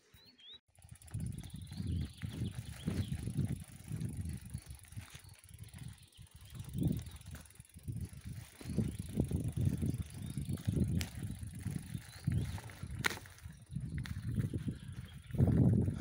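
Wind rumbling on the microphone while riding a bicycle along a dirt forest trail, mixed with tyre noise from the ground. It begins suddenly just under a second in, and a couple of sharp clicks come in the second half.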